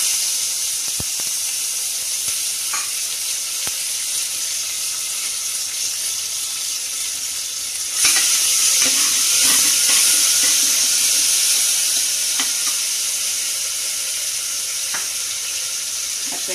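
Ginger-garlic paste sizzling in hot oil with whole spices in an aluminium pressure-cooker pan, a steady loud hiss. About halfway through it gets louder as a steel ladle stirs it, with scraping and a few taps of the ladle on the pot.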